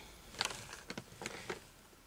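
About four soft clicks and rustles from craft materials being handled on a table.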